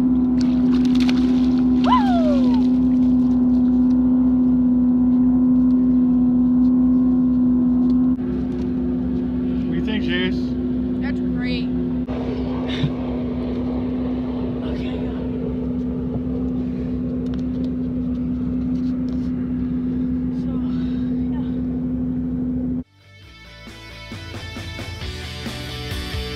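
A boat motor running with a steady drone at one pitch, with voices and short knocks over it. It cuts off suddenly just before the end, and guitar music starts.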